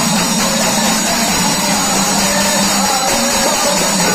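Folk music: several pairs of brass hand cymbals clashing continuously in a steady rhythm, with a man singing over them.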